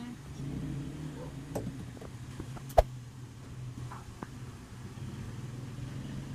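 A large die thrown onto the table, landing with one sharp knock about three seconds in, over a steady low hum, with a few faint clicks around it.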